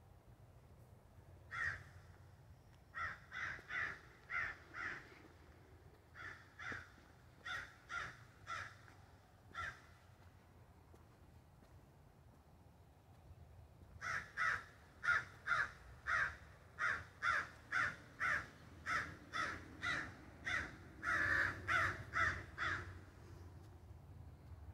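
Crows cawing in long runs of short, repeated calls, about two a second. One run fills the first half, then after a pause of a few seconds a louder, denser run goes on until shortly before the end.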